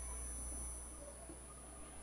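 Faint room tone with a steady low hum, easing slightly about a second in.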